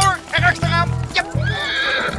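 Background music with a steady pulsing bass beat, and a horse whinnying near the end.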